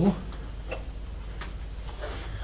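A few faint, scattered footstep clicks and crunches on a floor strewn with rubble and debris, over a low steady rumble.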